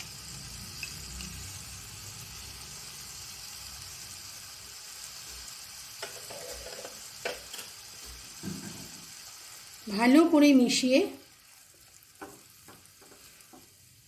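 Onion and ginger-garlic paste frying in hot oil in a nonstick pan, a steady sizzle as the fresh paste goes in. The sizzle falls away about eleven seconds in, leaving faint clicks of a silicone spatula stirring in the pan.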